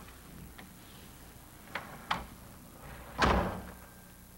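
A door being shut with one solid knock just after three seconds in, preceded by a few light clicks.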